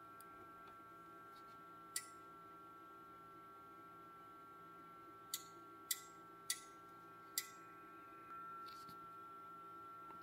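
Sharp relay clicks from a digital oscilloscope running autoset: one click, then four more spaced well under a second apart as the scope switches its input ranges. Under them is a faint, steady, high-pitched electronic whine.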